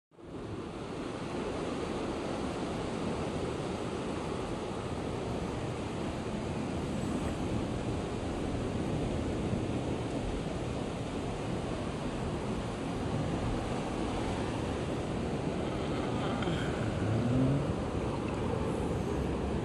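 Steady wash of ocean surf with wind buffeting the microphone. Near the end there is a brief rising tone.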